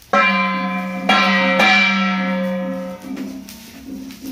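A bell struck three times, the second and third strokes coming close together about a second in, each ringing on with a low hum and bright overtones that slowly fade away.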